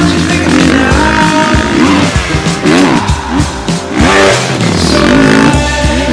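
Motocross bike engine revving up and falling off again and again as it is ridden hard, with music playing over it.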